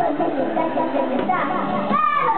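A toddler's voice babbling into a corded toy microphone, rising in pitch near the end.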